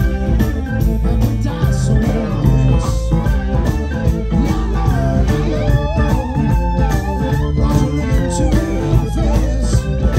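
Live blues-rock band playing: electric guitar and organ over bass and drums. About halfway through, a lead line with bending, wavering notes.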